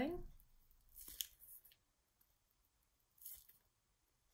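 Two short, soft rustles, about a second in and again after three seconds, from a plastic piping bag squeezed in the hand as buttercream petals are piped onto a cupcake. Otherwise near silence.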